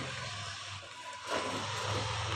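Motor scooter riding away down a lane, its engine sound fading as it goes.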